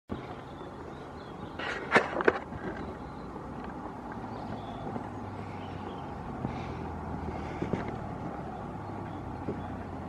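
Outdoor street ambience with a steady low engine hum from a vehicle, broken by two sharp knocks about two seconds in.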